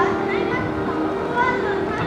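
A group of young women's voices calling out in short, rising shouts over yosakoi dance music with long held notes.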